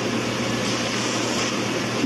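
Steady even hiss with a low steady hum underneath, unchanging throughout: the background noise of the room recording.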